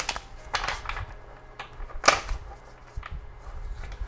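A deck of tarot cards being shuffled by hand: irregular clicks and slaps of the cards against each other, the sharpest about two seconds in.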